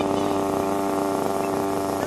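Small two-stroke glow engine of a nitro RC car running at a steady high speed, holding one pitch throughout. Birds chirp faintly above it.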